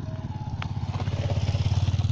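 Small motorcycle engine running as it rides past close by, an even pulsing rumble that grows louder and is loudest near the end.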